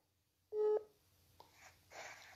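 A single short electronic beep from a smartphone during a phone call, about half a second in, followed by faint handling noise as the phone is picked up.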